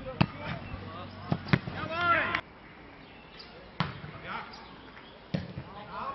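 A Faustball being hit with players' fists and forearms and bouncing on the grass: a series of sharp single smacks, about five, with a shout about two seconds in.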